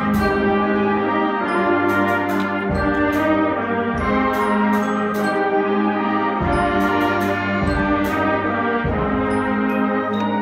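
Student concert band playing live, with the brass to the fore. Occasional low strokes cut through the sustained chords.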